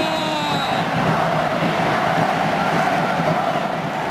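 Continuous crowd noise from a packed football stadium: thousands of fans cheering and chanting at a steady level. A brief pitched call rises over it near the start and fades about a second in.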